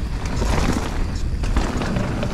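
Marin Alpine Trail XR mountain bike rolling down a dirt singletrack on its Assegai tyres, with a steady rumble of wind buffeting the camera microphone. Short knocks and rattles come from the bike running over roots and bumps.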